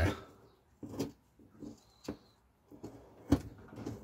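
Small carving knife slicing bark from a fresh green stick: a handful of short, separate cutting strokes, the loudest a little over three seconds in.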